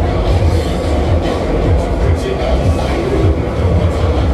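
Loud funfair ride music with a heavy, regular bass beat, over the steady running rumble of a spinning Polyp ride and crowd noise.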